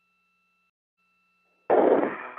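Near silence with a faint steady electronic tone, broken by a short gap, then near the end a sudden short loud burst of radio static as a space-to-ground radio channel opens.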